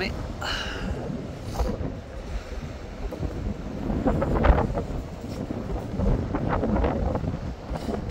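Strong wind buffeting the microphone, a low uneven noise that swells and drops with the gusts.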